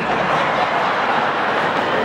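Large audience laughing and applauding, a steady dense wash of sound that cuts off abruptly near the end.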